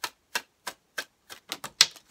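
Tarot cards being shuffled by hand: a run of sharp card snaps about three a second, coming closer together and loudest near the end.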